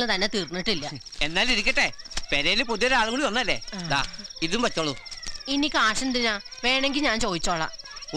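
People talking, with crickets chirping steadily behind them in a continuous high trill.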